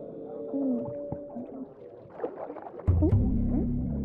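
Film soundtrack for an underwater scene: soft gliding, wavering tones, like whale calls, over music. About three seconds in, a loud deep sustained drone comes in.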